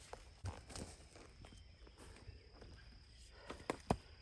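Footsteps on leaf litter and twigs on the forest floor, a few faint crunches, with a sharp knock near the end.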